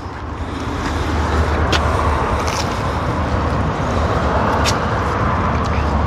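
A road vehicle running nearby: a steady low rumble that swells in about a second in and holds.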